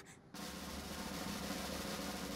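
Snare drum roll, starting about a third of a second in and holding steady: a suspense drum roll before a reveal.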